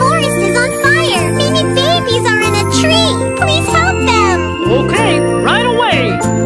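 Children's song music with jingling bells and a bouncy bass line, and a voice singing a melody over it.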